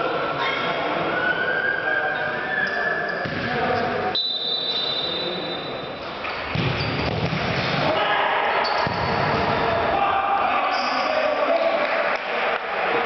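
Futsal ball being kicked and bouncing on a sports-hall floor, with players shouting, all echoing in the large hall. A steady high whistle-like tone, most likely the referee's whistle, sounds for about two seconds about four seconds in, as play restarts from the centre.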